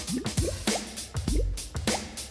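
Playful background music with a steady beat and short rising bubbly 'bloop' glides, about three a second.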